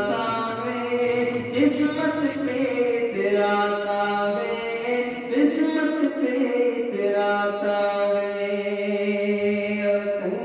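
A man's voice chanting a naat in long, held, gliding notes, with a steady low tone sustained underneath.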